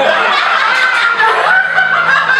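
A high, wavering voice-like sound that bends up and down without words, over a steady acoustic guitar.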